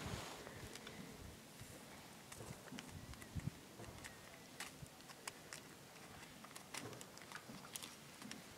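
Faint, scattered small ticks and rustles of handling: oxalic acid crystals being tipped from a small plastic baggie into the metal tray of a beehive vaporizer.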